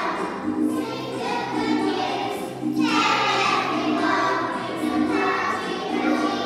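A group of young children singing together along with backing music that has a steady, regular bass beat.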